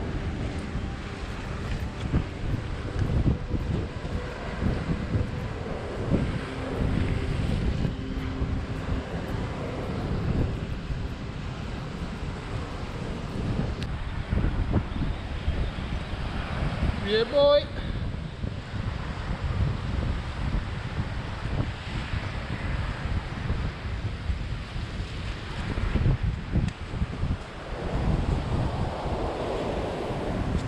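Wind buffeting the microphone over breaking surf, a gusty low rumble throughout. About seventeen seconds in there is a brief rising human cry.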